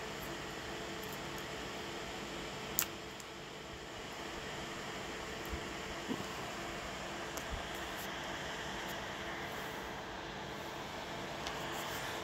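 Small cooling fan on the driver's heatsink running steadily, with a faint steady hum from the running circuit. There is one sharp click about three seconds in and a couple of faint ticks later.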